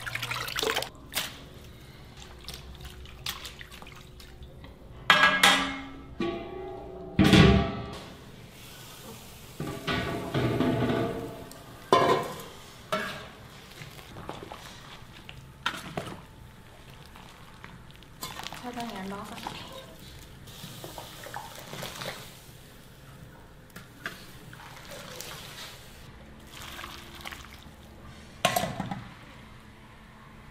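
Water dripping and splashing as soaked dried cabbage is squeezed out by hand and handled, broken by several loud voice-like bursts, the loudest about five and seven seconds in.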